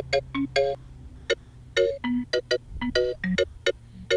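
Sampled orchestral vibraphone playing a short melody of quick struck notes and three-note chords, each note dying away fast, with a low steady tone underneath that fades out about a second in.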